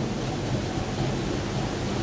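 Steady background noise: an even hiss with a low hum underneath, and no speech.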